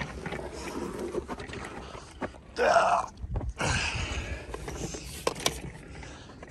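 Broken gaming chair being handled and lifted: scattered knocks and rattles from its plastic and metal frame, base and gas-lift column. A brief louder, mid-pitched sound about two and a half seconds in.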